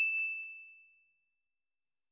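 A single bright bell ding, the sound effect of a 'click the bell' notification reminder, struck once at the start and fading away over about a second.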